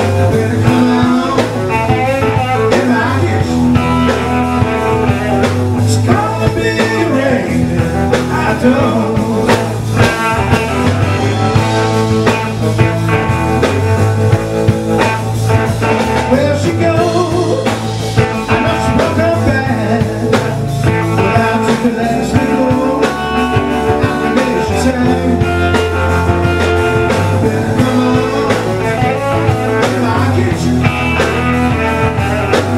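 Live blues band playing a slow blues: electric guitar over bass and drums, loud and steady throughout.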